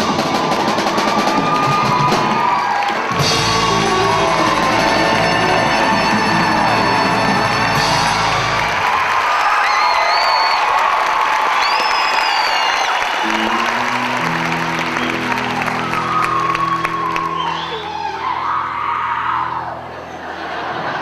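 Live rock-and-roll band (drums, bass and electric guitars) playing the end of a song in a hall, with whoops and cheers from the audience. Partway through the drums and bass drop away, leaving held notes that die down near the end.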